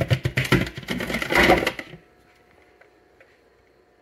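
A loose block of ice knocking and rattling inside an upside-down plastic container, then sliding out and dropping into a water jug with a loud plop a little under two seconds in.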